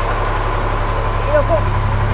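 A loud, steady machine drone with a deep hum and a thin, steady high whine over it, running evenly without change.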